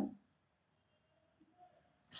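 Near silence: quiet room tone, with the last of a spoken word dying away at the very start.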